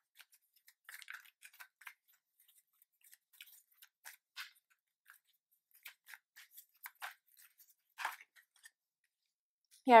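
A deck of angel answer oracle cards being shuffled and handled in the hands: quiet, irregular light clicks and snaps of card on card, stopping about a second before the end.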